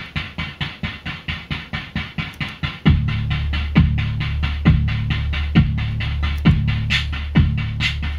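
Eurorack drum patch running off a rhythm-pattern module: a digital hi-hat ticks steadily about four times a second. About three seconds in, an analog kick drum joins on every beat, a low thud with a quick downward pitch sweep about once a second, its low tone ringing on between hits, making a basic four-on-the-floor rhythm.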